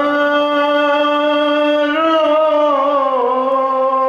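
A man's voice singing one long held note, unaccompanied devotional singing. The note rises slightly about halfway and dips a little after about three seconds.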